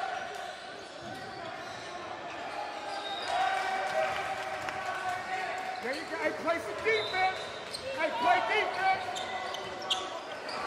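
Live basketball game sound on a hardwood gym court: the ball bouncing and the voices of players and spectators carrying through the hall. A flurry of short squeaks and calls is loudest between about six and nine seconds in.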